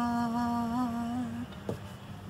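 A woman's unaccompanied singing voice holds one steady low note that ends about one and a half seconds in, followed by a single soft tap.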